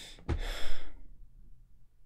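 A man sighs: one breathy exhale a quarter of a second in, lasting about half a second.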